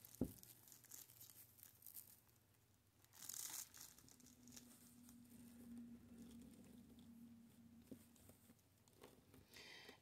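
Faint rustling and crinkling of plastic deco mesh being bunched and handled, with a small knock just at the start and a brief louder rustle about three seconds in.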